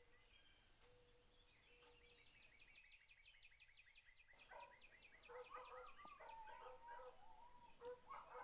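Faint animal calls: a fast chattering run of about ten short chirps a second starting about two seconds in, then wavering, yelping calls in the second half.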